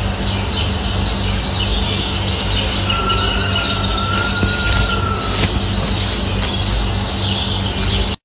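Birds chirping over a steady low hum. A single thin whistle-like tone is held for about two and a half seconds in the middle.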